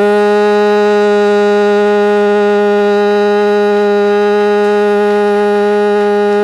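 One long, loud note held at a single steady pitch, rich in overtones and without any wavering.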